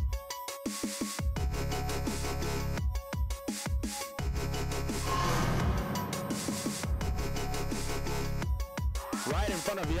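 Electronic music with a heavy bass beat, broken by several sudden brief drop-outs, with a rising whoosh swell about halfway through.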